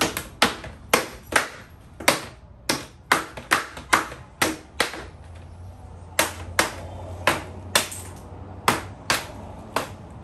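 Mallet knocking apart a plastic shelving unit, striking its frame joints in a string of sharp knocks about two a second, with a brief pause about halfway through.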